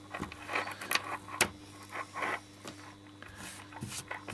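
Braided USB Type-C cable being handled and uncoiled by hand: the nylon braid rustles and scrapes, with a few sharp clicks as the coil and its tie are worked loose.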